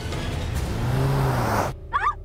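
A car stopping suddenly: a swelling rush of vehicle noise with a low rising-and-falling tone, cut off abruptly near the end, followed by a short cry.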